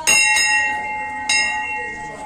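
Hanging temple bell rung by hand: two quick strikes, then a third about a second later, each leaving a ringing tone that slowly fades.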